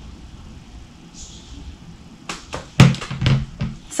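Quiet room tone, then a little over two seconds in, a quick run of thumps and knocks of handling noise close to the microphone, the loudest about three-quarters of the way through.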